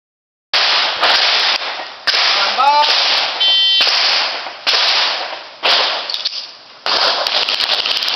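Handgun shots, about seven in irregular succession, each sharp and followed by a short echoing tail.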